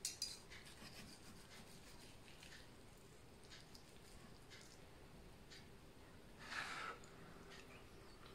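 Near silence, with faint clicks and scrapes of a steel knife and fork carving a whole roast turkey: a couple of small clicks at the start, light ticks after, and a soft rustle near the end.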